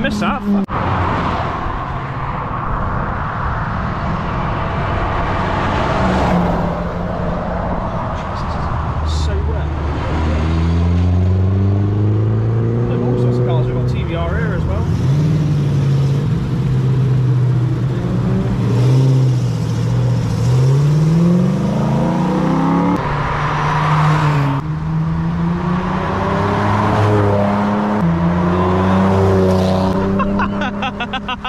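Cars accelerating past one after another on a wet road. Their engine notes rise and fall in pitch as each one pulls away, over the hiss of tyres on wet tarmac.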